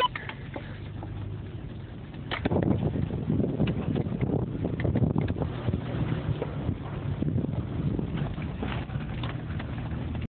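A vehicle driving off-road, heard from inside the cab: a steady low engine and road sound, turning louder and rougher about two seconds in, with many short knocks and rattles as it goes over rough ground.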